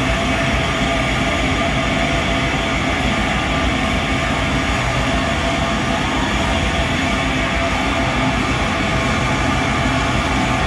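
Live band's wall of heavily distorted electric guitar noise: a dense, unbroken drone at steady loudness, with no beat or vocals.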